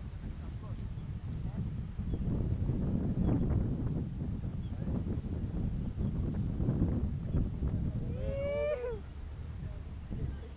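Wind buffeting the microphone as a steady low rumble, with faint bird chirps. A short high call with several quick pitch bends comes near the end.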